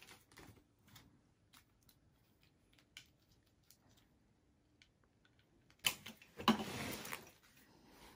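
Faint clicks and taps of a plastic power adapter and its cord being handled and unwrapped, then a louder rustle of wrapping about six seconds in.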